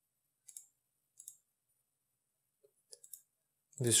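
A few faint, separate computer mouse clicks spread over several seconds.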